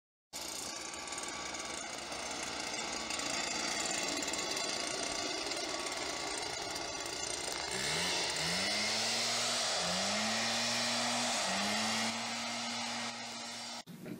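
Steady, loud machine noise with a hum. From about eight seconds in, a motor revs up four times, each time climbing in pitch and then holding. It cuts off abruptly near the end.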